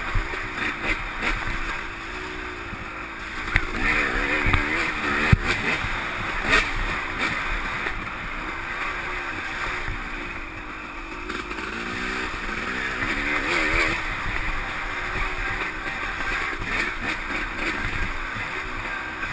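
Dirt bike engine running hard on a bumpy trail, its pitch rising and falling as the throttle is worked, with wind rush and a few sharp knocks from the bumps.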